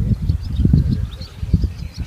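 A low, uneven rumble with faint high bird chirps over it.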